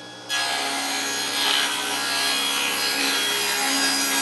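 Table saw running and ripping a thin strip of wood: a steady motor hum under a constant cutting noise. It comes in suddenly just after the start and cuts off sharply.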